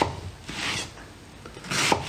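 A Global chef's knife slicing through watermelon flesh onto a wooden chopping board: a softer cut about half a second in and a louder, sharper one near the end.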